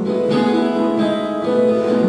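Acoustic guitar being strummed, its chords ringing on, with a new chord struck about a second and a half in.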